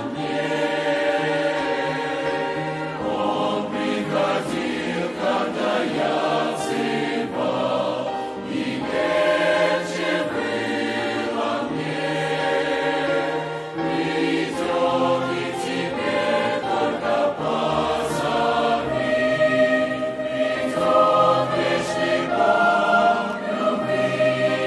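Mixed youth choir of men's and women's voices singing a Russian-language hymn, moving through held chords without a break.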